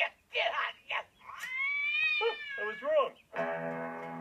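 A cartoon cat's long yowl, rising and then falling, starting about a second in, followed by a few shorter cries. Music with sustained chords starts near the end.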